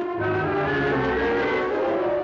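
Dramatic orchestral film-score music: loud, held brass chords over a low bass note, the upper notes edging slightly upward before the chord breaks off just after the end.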